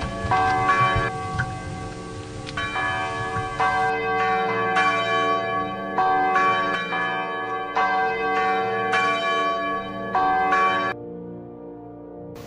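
Church bells ringing a peal of struck notes, about one strike a second, each note ringing on. The bells stop about a second before the end.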